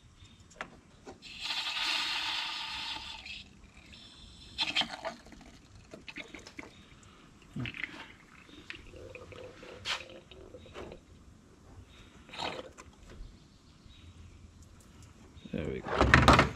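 Cooling-system pressure tester being released on the Jeep's coolant filler: a hiss of about two seconds as the pressure that the repaired system has held is let off, followed by scattered clicks and knocks.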